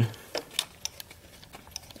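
Faint, irregular metallic clicks and taps from a spark plug socket and extension turned by hand as a new spark plug threads into a freshly installed thread insert in an aluminium cylinder head.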